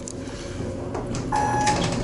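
A single short electronic beep, one steady pitch lasting about half a second, comes near the end over a low hum.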